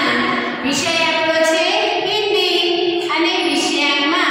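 A woman singing in a high voice, holding long notes.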